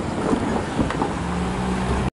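Low outdoor rumble with wind noise on the microphone. A steady low hum joins after about a second.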